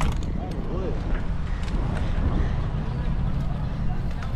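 Wind rumbling on the microphone of a camera riding on a moving bicycle, with rolling and rattling noise from the bike and a few sharp clicks. A faint voice is heard briefly about a second in.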